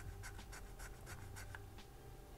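Fibreglass scratch pen scraping a corroded circuit board in quick short strokes, about five a second, faint. The scraping is cleaning oxidation off the board's copper traces. The strokes stop near the end.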